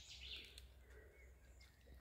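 Near silence: faint outdoor background with a few faint bird chirps.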